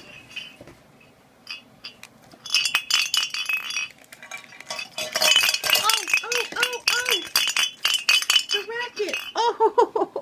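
Small jingle bells on a Christmas toy being shaken hard and fast: a loud, dense jangling that starts about two and a half seconds in and keeps going, with a person's voice over it in the second half.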